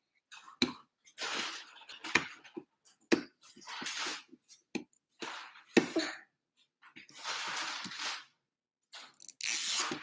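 Plastic wrapping on a toy package crinkling and tearing in irregular bursts as fingers pick at its tear strip, with small clicks in between. The loudest rip comes near the end, as the tear strip gives way.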